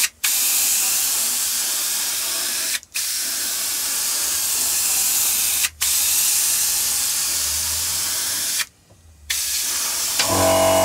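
Airbrush spraying paint, a steady hiss of air and paint. The hiss breaks off briefly three times and for about half a second near the end.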